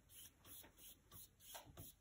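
Near silence, with faint soft strokes of a paintbrush brushing over paper, about three or four a second.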